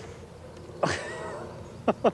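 A man laughing briefly about a second in, then again for a moment near the end.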